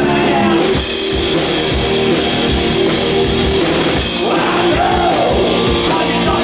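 Live rock band playing amplified: electric guitar and bass over a steadily beating drum kit.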